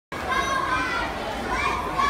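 Children cheering and shouting in an indoor pool hall, several high voices overlapping with long, held calls.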